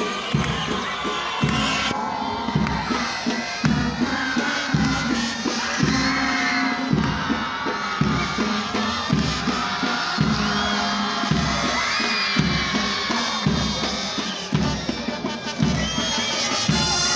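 Music with a steady beat, about one beat a second, over a large crowd cheering and shouting.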